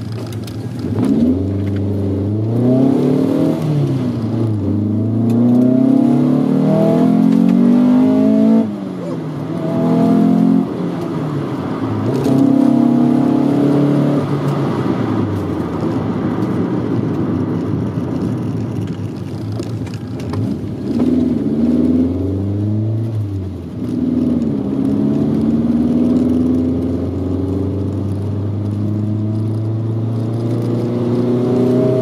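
1983 VW Rabbit GTI engine heard from inside the cabin, pulling hard and backing off again and again: the pitch climbs, then drops suddenly at each shift or lift-off. Between the pulls there is a stretch of road and tyre noise. These are the repeated accelerations of a brake-bedding run.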